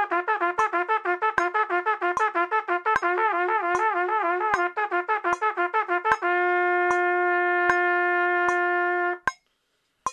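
Trumpet playing a drill of fast five-note groups, some tongued and some slurred, to a metronome clicking at 76 beats a minute. About six seconds in it settles on one long held note, which stops about nine seconds in, leaving only the metronome clicks.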